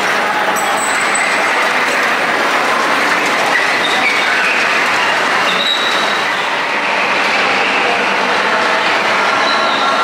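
Track-guided vintage-car ride running along its rail: a steady rolling noise with brief faint high squeals.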